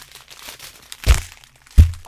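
Plastic strip bags of diamond-painting resin drills crinkling as they are handled, with two sharp thumps, one about a second in and a louder one near the end.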